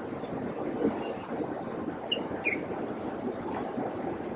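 Woodland ambience: a steady low rushing, crackling noise, with two short high chirps from a bird a little after halfway.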